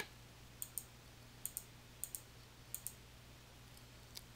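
Faint clicks of a computer mouse button: about four clicks a little over half a second apart, each a quick double tick of press and release, as drop-down menu choices are made.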